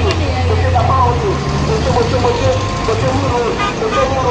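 A car engine running close by in slow roadside traffic, a steady low hum that fades near the end, with people's voices chattering over it.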